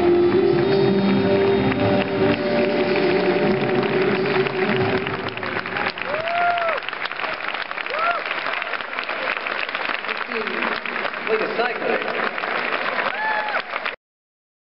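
Jazz big band holding the final chord of the tune, which ends about five seconds in. Audience applause follows, with a few short whoops from the crowd.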